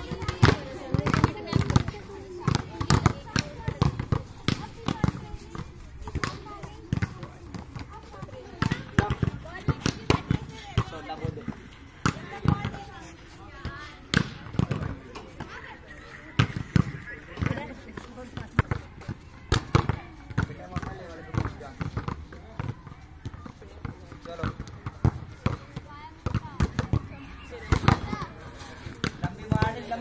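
Volleyballs being spiked and bouncing on a hard dirt court: repeated sharp slaps and thuds at irregular intervals, several a second at times, with voices talking.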